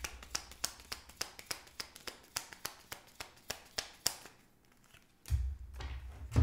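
Tarot cards being handled and dealt from the deck: a rapid run of light clicks, about five a second, for about four seconds, then a low thud near the end as cards are set down on the wooden table.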